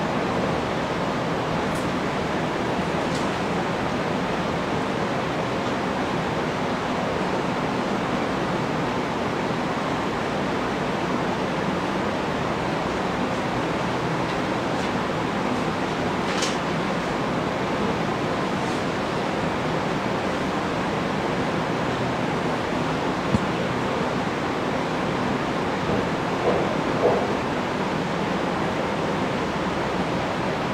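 Steady, even hiss of background noise with no speech, broken only by a few faint clicks near the end.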